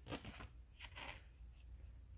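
Faint crinkling and rustling of a plastic binder sleeve page full of trading cards being turned over.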